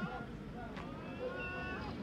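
A street cat meowing faintly, one drawn-out call in the second half, among cats being fed.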